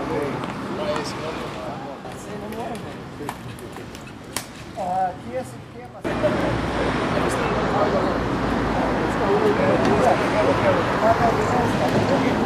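Indistinct outdoor chatter of several people talking at once. About halfway through it cuts suddenly to louder, denser chatter over a low rumble.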